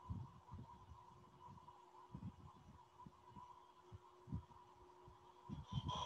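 Near silence: faint room tone with a steady high electrical hum and scattered soft low thumps, with a louder low rumble starting near the end.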